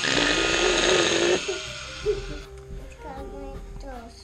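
An oscillating cast saw cutting into a plaster or fibreglass leg cast: a loud, sudden buzz at the start that dies away after about a second and a half. Background music plays under it.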